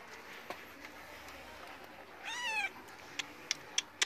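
A black-and-white kitten meows once, a short high meow about two seconds in that rises and then falls. A few sharp clicks follow near the end.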